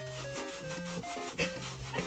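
A wooden-handled bath brush scrubbing a wet, soapy dog's leg and paw in rubbing strokes, with louder strokes about two-thirds of the way in and at the end. Background music plays over it.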